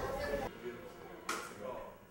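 Trumpet and drum-kit playing trailing off in the first half second. Then a quiet room with faint voices and one sharp tap just past the middle.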